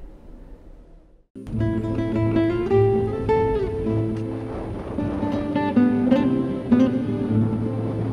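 Faint room tone, then about a second and a half in, instrumental outro music starts suddenly, led by a plucked guitar.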